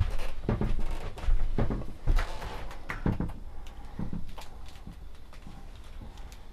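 A string of knocks, clunks and rustles from something being handled in a small caravan room, louder in the first half and fainter after about four seconds.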